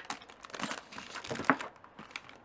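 Clear plastic album sleeve crinkling as a sleeved album is handled and set down on a shelf, with one sharp knock about one and a half seconds in.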